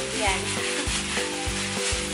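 A clear plastic bag full of clothes rustling and crinkling as hands dig into it, over background music with steady held notes and a regular low beat.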